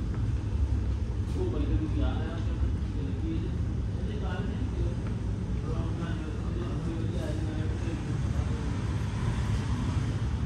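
Voices talking in the background over a steady low rumble.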